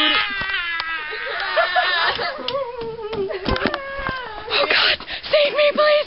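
A girl's voice in a long, wordless, wavering wail that slowly falls in pitch, breaking into shorter cries near the end.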